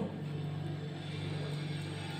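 A steady low hum with a faint even background hiss, unchanging throughout.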